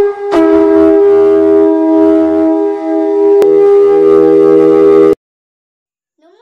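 Loud intro sting of sustained horn-like chords, held for about five seconds and then cut off abruptly.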